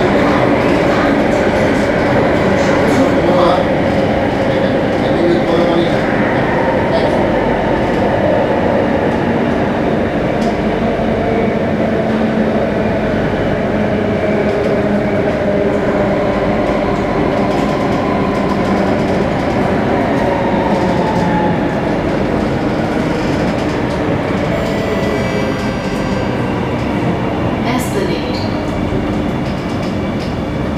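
Singapore MRT electric train heard from inside the car running through a tunnel: a steady rumble of wheels on rail with motor whine. The whine slides down in pitch through the second half and the overall sound eases off as the train slows for the next station, with a sharp click near the end.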